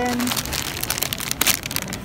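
Paper bread bag crinkling and rustling as it is handled close up, in irregular crackles.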